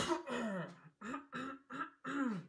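A man coughing and clearing his throat into his fist: one sharp, loud cough, then a run of about five shorter, throaty coughs.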